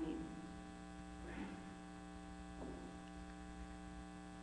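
Steady electrical mains hum, low in level, with a couple of faint brief noises near the middle.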